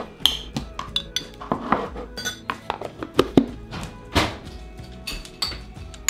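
Dishes, bowls and plastic food containers being handled on a table: irregular clinks and knocks of bowls, lids and cutlery, over background music.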